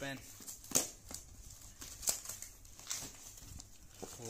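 A paper courier bag wrapped in clear plastic tape being torn and crinkled open by hand. It gives a run of sharp, irregular rips and rustles, the loudest about a second in.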